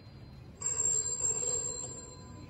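Telephone bell ringing: one ring starting about half a second in, then fading out over the next second and a half.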